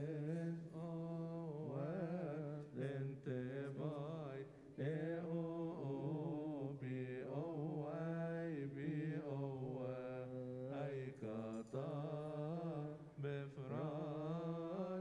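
Unaccompanied Coptic Orthodox liturgical chant: a man's voice sings long, melismatic notes that waver and bend in pitch, with brief breaths between phrases.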